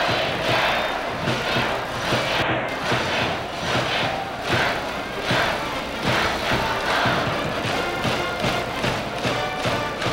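Large stadium crowd cheering and chanting in a steady rhythm, swelling and falling about every second, with music underneath.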